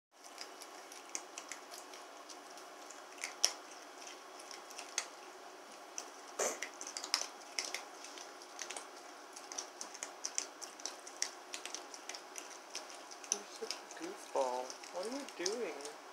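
Soft, irregular clicking and ticking from a Virginia opossum nosing and mouthing at a wooden chair leg on a tile floor. A person's voice comes in briefly near the end.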